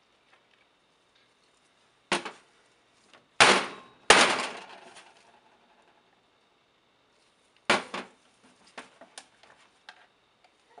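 Plastic pouring pitchers of soap batter knocking against the metal work table and mold as they are handled and set down: a knock about two seconds in, two loud knocks soon after with a ringing tail of about a second, another knock near eight seconds, then a few light clicks.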